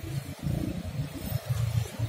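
Wind buffeting the phone's microphone: an uneven, gusty low rumble.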